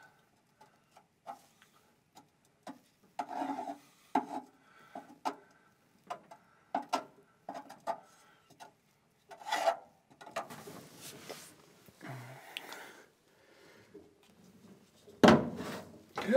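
A wooden paint stick scraping and smearing thick seam sealer into the seams and a small hole of a car's steel trunk floor, in short, irregular strokes. A louder scrape comes near the end.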